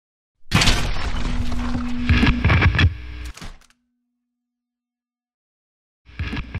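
Intro sound effect: a loud burst of noise with several knocks and a steady low hum, lasting about three seconds. It cuts off abruptly, leaves a faint fading hum, and is followed by silence.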